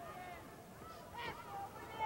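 Boxing arena crowd shouting and calling out, many overlapping voices rising and falling at a low level.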